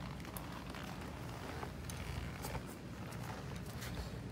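Faint rustling and a few light clicks from a scuba buoyancy jacket and tank shifting as the wearer gets down onto his hands and knees, over a steady low background noise.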